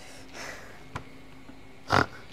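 Screwdriver prying at the crimped bezel lip of a vintage VW Beetle speedometer: quiet scraping, a small click about a second in, then one sharp, loud knock just before the end.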